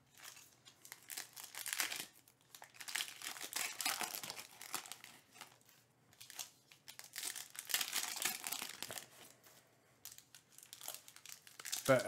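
Foil trading-card pack wrappers crinkling in several short bursts as the packs are handled and torn open, with cards sliding against each other.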